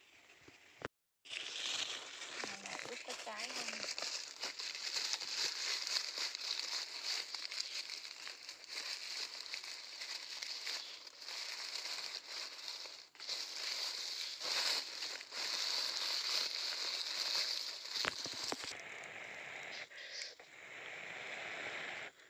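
Dry leaves crinkling and crackling as they are handled and bundled by hand, a dense papery rustle that drops off near the end.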